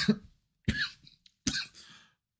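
A man clearing his throat with two short coughs, about a second apart.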